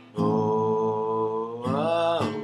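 A man's voice holds a long, steady wordless 'oh' over a ringing strummed acoustic guitar chord. About one and a half seconds in, a fresh strum comes and the voice slides upward.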